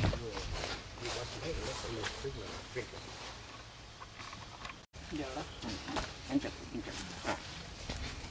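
Faint, indistinct voices of people talking at a distance, with a low rumble underneath and scattered small knocks. The sound drops out briefly about five seconds in.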